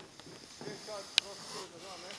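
Quiet, indistinct talking, with one sharp click a little past halfway.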